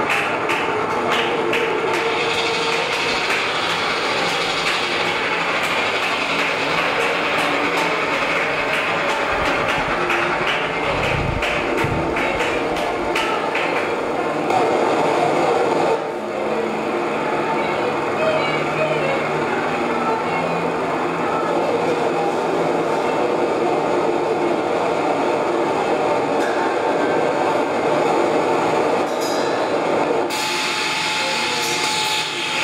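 Live experimental electronic noise music: a dense, steady wash of electronic noise and drones, with a flurry of rapid clicks in the first few seconds and a deep rumble swelling up near the middle.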